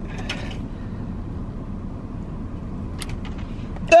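Low, steady rumble of a car running, heard from inside its cabin, with a few light clicks and knocks as someone reaches down into the footwell. A short vocal cry comes right at the end.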